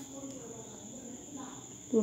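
A steady high-pitched trill, typical of a cricket, running continuously under a faint, low murmur of a voice.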